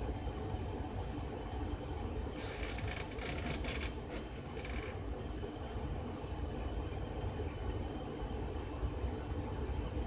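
A steady low rumble, with a burst of rustling close to the microphone from about two and a half to five seconds in, and a few light clicks near the end.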